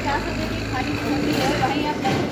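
A man speaking Hindi close to a handheld microphone, over a steady low hum.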